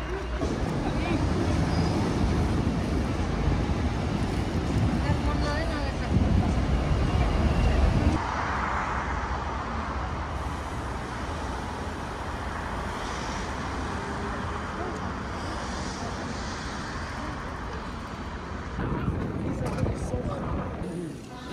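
Outdoor city street ambience of traffic and distant voices. A heavy low rumble runs for about the first eight seconds, then cuts off abruptly and gives way to a steadier, quieter hiss.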